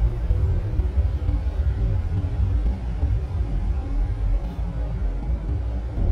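Steady low rumble of a truck cab on the move, engine and road noise, with faint background music over it.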